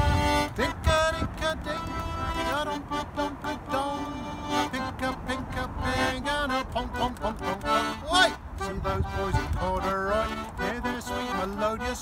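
Button accordion playing a lively folk-song tune in short notes and chords, with a man's singing voice joining in at times.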